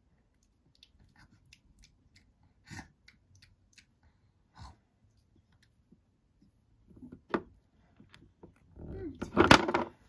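Small plastic toy spoon tapping and scraping against a toy plate and a doll's face: scattered light clicks, with a louder burst of clattering handling noise near the end.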